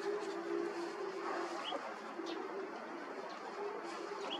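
A faint steady hum that breaks off and returns a few times, over light background hiss.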